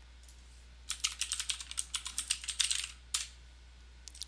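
Computer keyboard typing: a quick run of keystrokes lasting about two seconds, starting about a second in, then one more click shortly after.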